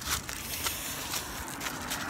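Soft, steady rustling with a couple of faint clicks, the kind of handling and clothing noise a hand-held camera picks up while its holder walks.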